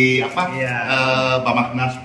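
A man's voice talking, drawing out one long held vowel of slowly falling pitch in the middle.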